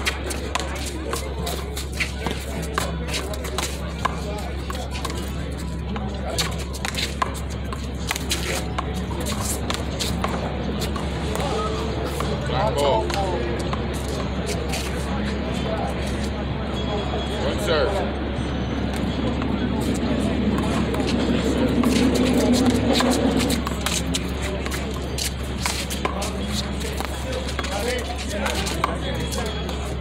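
Sharp, irregular smacks of a small rubber handball off gloved hands and a concrete wall during a rally, over background music and voices, with a steady low hum underneath.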